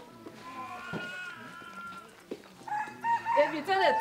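A rooster crowing once: one long call of about two seconds, rising slightly in pitch.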